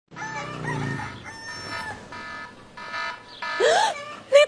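A rooster crowing in long, drawn-out calls, the stock cue for morning at the start of a wake-up scene. Near the end a woman gives a startled "Huh?!"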